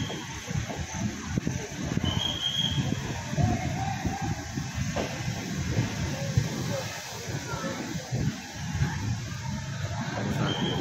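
Passenger train rolling slowly along a station platform: an uneven low rumble of wheels on the rails, with a short high tone about two seconds in.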